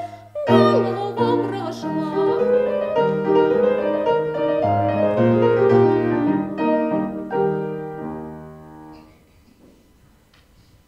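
Grand piano playing the closing bars alone after the soprano's song ends, a run of chords that dies away to quiet about nine seconds in.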